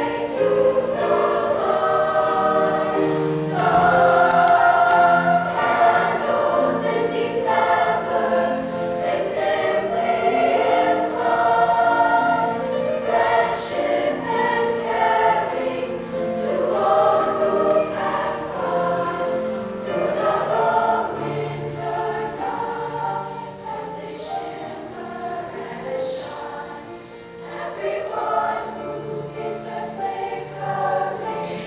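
Girls' choir singing a slow piece in long held notes, fuller and louder in the first half and softer near the end.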